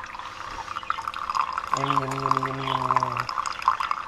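Single-serve pod coffee brewer dispensing a thin stream of coffee into a nearly full mug, a steady splashing trickle of liquid. A steady low hum joins for about a second and a half in the middle.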